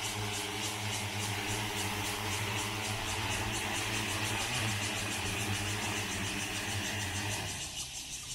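DJI agricultural spraying drone flying in low with its rotors running: a steady hum of stacked tones over a rushing haze. The sound drops near the end as it comes down.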